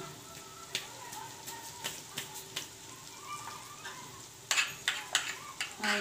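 Flour-coated potato maakouda patties frying in hot oil in a frying pan: a steady sizzle with scattered crackles, which get louder and more frequent over the last second and a half.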